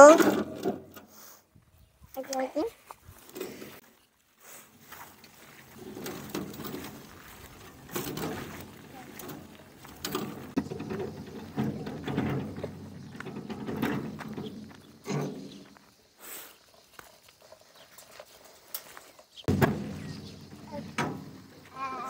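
Metal wheelbarrow being pushed along a dirt path, a low rumbling rattle from about six seconds in until about fifteen seconds. Brief snatches of voice come about two seconds in and again near the end.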